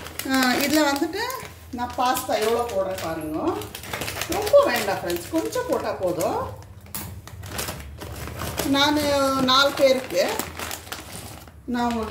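Mostly a woman's voice talking. In the gaps come short crackles and clicks as a plastic pasta packet is snipped open with scissors.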